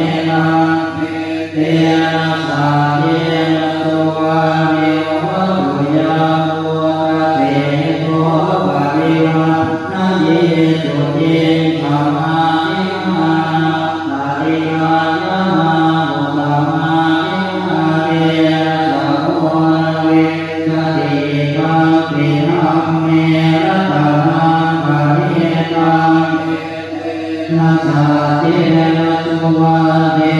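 Group of Thai Buddhist monks chanting the evening service (tham wat yen) together in a steady, level-pitched recitation, with brief pauses near the start and near the end.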